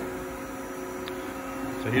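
Steady hum of a four-axis vertical machining center running its warm-up program, made up of several fixed tones that hold level throughout.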